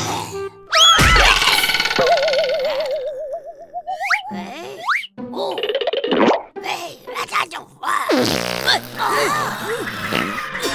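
Cartoon slapstick sound effects over background music. A sudden hit comes about a second in, then a long wobbling boing that slides upward in pitch, and near the end more short springy bounce sounds.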